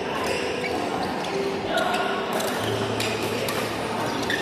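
Badminton rally in a large, echoing sports hall: rackets hitting the shuttlecock, several sharp hits in the second half, with shoes squeaking on the court floor and players' voices around the hall.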